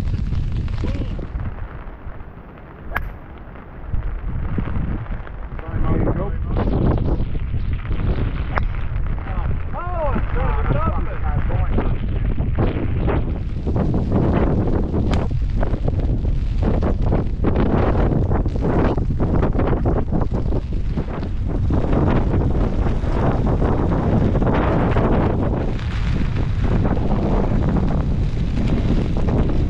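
Wind buffeting the microphone: a heavy, uneven low rumble that eases for a few seconds near the start, with a single sharp click about three seconds in, then returns in irregular gusts.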